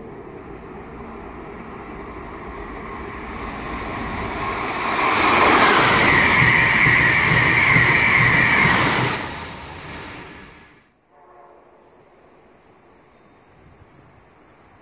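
Amtrak Acela Express electric trainset passing through on the near track: a rushing rail and wheel noise builds over about five seconds, is loudest for about four seconds as the cars go by, then falls away and cuts off about eleven seconds in, leaving a faint steady background.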